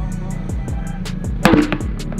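Background music with a beat: rapid, evenly spaced high ticks and deep kicks that slide down in pitch, with one louder sharp hit about one and a half seconds in.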